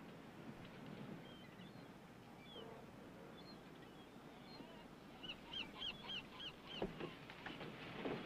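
Faint outdoor ambience with a small bird chirping: scattered chirps, then a quick run of about six short chirps in the second half. A single knock sounds about a second before the end.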